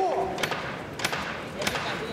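Three sharp knocks, about two-thirds of a second apart, over the steady noise of an arena crowd during a boxing round.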